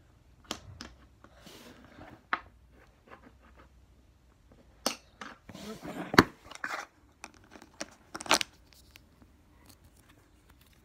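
Plastic Lego base plates being handled: scattered clicks and knocks with short bursts of rustling, the loudest knock about six seconds in.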